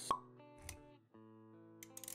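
Intro music of a motion-graphics logo animation: held synth-like notes with a sharp pop about a tenth of a second in, which is the loudest moment. A soft low thump follows about half a second later, and a cluster of quick clicks comes near the end.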